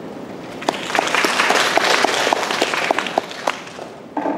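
Audience applauding, beginning about half a second in and dying away near the end.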